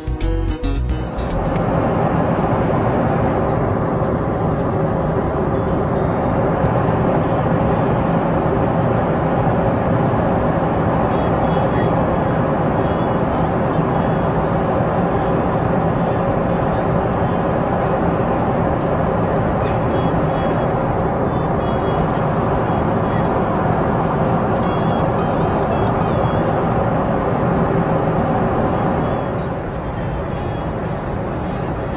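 Steady cabin noise of a Boeing 777-300ER at cruise: the even hum of its GE90 engines and the rush of air past the fuselage, with a few steady tones running through it. A short bit of guitar music ends about a second in.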